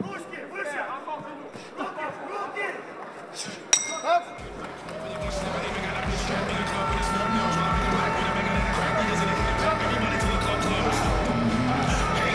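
Arena crowd voices, then a sharp metallic strike with a brief ring about four seconds in, the bell ending the round. Music with a steady beat then starts and plays on.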